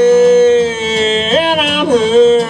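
Male country singer holding one long sung note over a strummed acoustic guitar, then leaping up to a higher note and sliding back down near the end.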